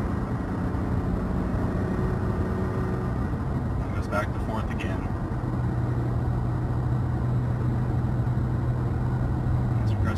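Engine drone heard inside the cab of a Toyota Tacoma, its 3.5-litre V6 pulling steadily in drive. Partway through, the note settles lower as the automatic transmission upshifts to fifth too early, a known fault of the stock shift programming.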